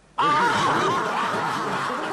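Laughter that breaks out suddenly a fraction of a second in and keeps going.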